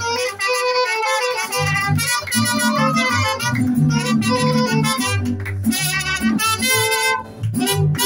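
Live mariachi band playing an instrumental passage: trumpet carrying the melody over the guitarrón's bass line and strummed guitars.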